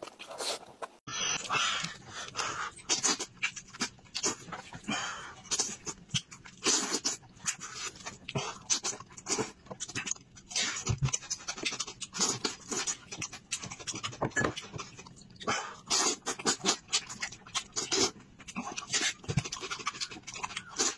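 Close-miked eating: wet, irregular chewing, lip-smacking and mouth clicks as meat is chewed with the mouth open, with a sudden change in sound quality about a second in.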